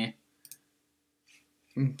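A short sharp click about half a second in and a fainter one a little past a second, over a faint steady hum, with a man's speech trailing off at the start and starting again near the end.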